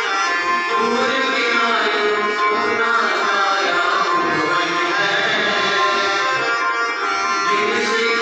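A group of voices singing a song together, accompanied by a harmonium holding steady reedy chords under them.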